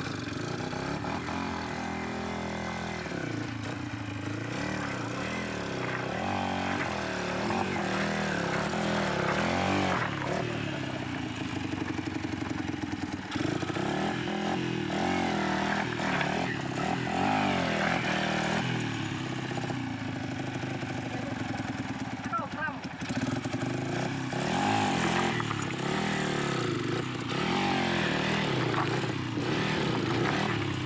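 Trail motorcycle engine running as the bike crawls over loose river rocks, its pitch rising and falling with the throttle, with people's voices over it.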